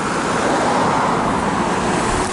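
Steady road traffic noise from cars driving past on a multi-lane street.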